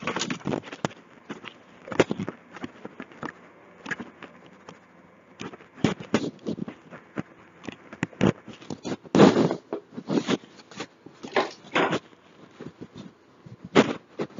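Handling noise from the recording device as it is carried and moved about: irregular knocks, clicks and rubbing, with a louder, longer rustle about nine seconds in.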